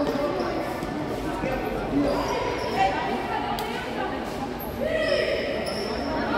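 A futsal ball being kicked and bouncing on the court floor in an echoing sports hall, with young players' voices calling out.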